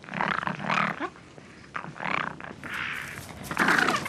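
Foxes snarling and growling over a carcass in a series of short, rough calls, the loudest near the end.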